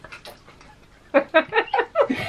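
A child laughing in a quick run of short bursts, starting about a second in.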